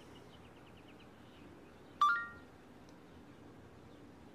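A short electronic chime from a Samsung Gear 2 smartwatch about two seconds in, a click followed by a few brief tones, as the watch acts on a spoken command to place a call. A faint run of quick high pips fades out in the first second.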